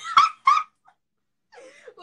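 A woman laughing in a few short, high-pitched bursts during the first half-second, then a pause before talking picks up again near the end.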